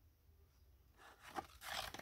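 Cardstock papercraft sword scraping against its paper sheath as it is drawn out: a few short papery rustles in the second half, after a near-silent first second.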